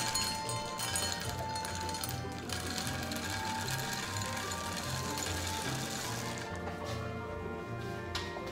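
Dry kibble poured from a container into a stainless steel measuring cup, spilling over onto a granite countertop: a continuous rattle of small hard pieces that stops about six and a half seconds in. Background music with a steady beat plays throughout.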